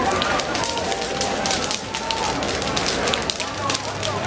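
Big fire of a burning New Year's effigy's wooden frame, crackling with many sharp pops, while a crowd talks.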